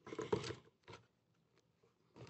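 Faint handling noise of a battery holder in a plastic locator receiver: a few soft rustles and clicks in the first half second, and one small click about a second in.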